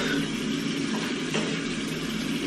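A steady low hum with a faint hiss over it, and a couple of faint light clicks about a second in.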